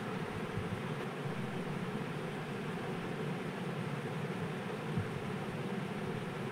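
Steady background noise under the faint sound of a steel spoon stirring yogurt raita in a clay pot, with a few soft knocks of the spoon against the pot.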